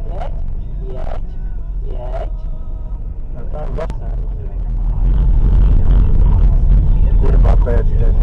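Car driving on a snow-covered road, heard from inside the cabin: a steady low rumble of engine and tyres that grows louder about five seconds in, with people talking over it.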